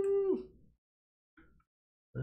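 A man humming a short steady note that drops in pitch as it ends, about half a second long, followed by silence.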